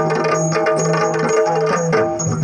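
Yakshagana himmela ensemble playing: the chande drum beaten rapidly with sticks, with maddale drumming, over a steady harmonium drone.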